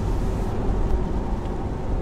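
Steady cabin noise of a 2016 Corvette Z06 cruising: a low drone from its supercharged V8, with tyre and road noise from the wet pavement.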